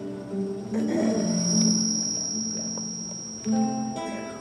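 Film soundtrack music with plucked string instruments, like guitar, holding sustained notes. A steady high-pitched tone comes in just under a second in and drops out about three and a half seconds in.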